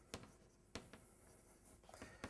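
Faint chalk writing on a blackboard, with a few short, sharp taps and scrapes of the chalk at uneven gaps.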